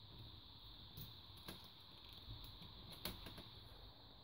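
Near silence with a few faint light clicks and taps, hands handling the thin plastic reflector sheet inside an LED TV's backlight.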